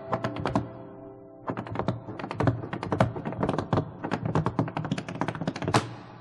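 Tap shoes striking a wooden stage in a fast, irregular run of taps that starts about a second and a half in. A piano chord rings out under the first second or so.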